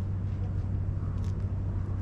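A steady low mechanical hum, like a motor or engine running, with a faint brief scratch about a second in as two kittens tussle.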